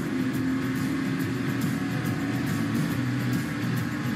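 NASCAR Truck Series race truck's V8 engine running steadily at speed, heard from an in-car camera.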